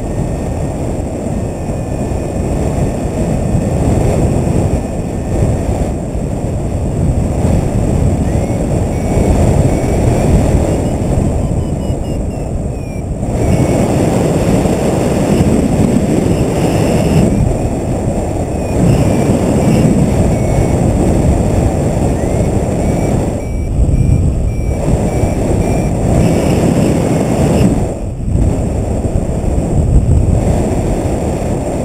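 Loud wind noise on the camera microphone from the airflow of a paraglider in flight, rising and easing unevenly.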